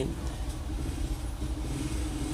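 Steady low background rumble with a faint, even hum underneath.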